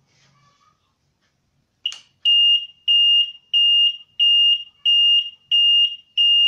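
An electronic beeper sounding a steady high-pitched tone in regular short beeps, about one and a half per second. It starts about two seconds in, just after a click.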